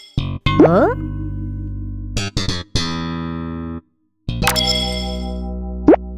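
Cartoon soundtrack music with comic sound effects: a quick rising sweep about half a second in and another near the end, and the music breaks off briefly around four seconds in.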